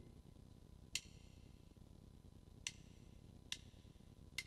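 Near silence as a piano chord dies away, with faint sharp clicks keeping a steady beat: first about 1.7 s apart, then closer together, under a second apart, near the end.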